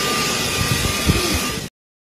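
Business jet on the ramp: a steady rushing hiss with a thin high whine and irregular low buffeting on the microphone. It cuts off abruptly near the end.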